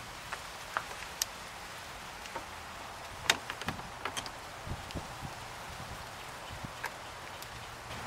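Scattered light clicks and rattles as the NOCO GB40 jump starter's clamps and cables are unclipped from the battery terminals and handled, over a steady faint outdoor hiss.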